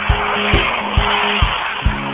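Music with a steady beat, a little over two beats a second, over the loud hissing skid of a car's tyres.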